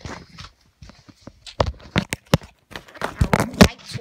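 Irregular knocks, clicks and rustling of a phone being handled and carried while walking.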